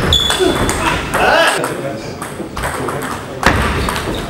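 Table tennis rally: a celluloid ball clicking off rubber-covered bats and the table in quick succession, with voices in the background.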